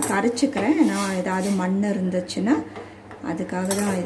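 A woman's voice talking.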